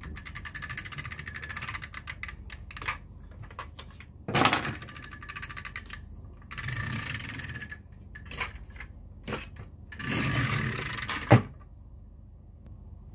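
A plastic Thomas & Friends toy train being handled and moved on a tabletop. Quick, steady clicking in the first two seconds, then separate bursts of plastic clatter, with one sharp click near the end.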